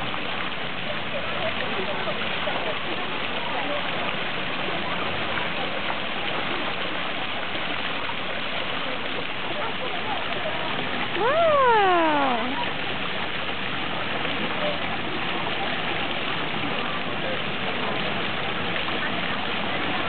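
Steady rushing of water-park fountain water running down a column onto the paving. About eleven seconds in, a voice calls out once in a long cry that falls in pitch.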